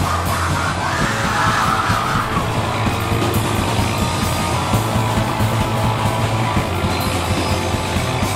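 A punk rock band playing live and loud: electric guitars, bass and a drum kit pounding steadily, with yelled vocals over the top.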